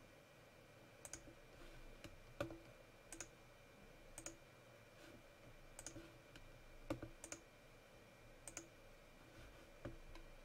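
Faint, irregular clicks of a computer mouse button, about a dozen over the span, several coming in quick pairs, over near-silent room tone.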